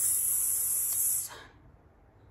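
Bond No. 9 perfume bottle's atomizer giving one sustained spray, a high hiss of about a second and a quarter that starts and cuts off sharply.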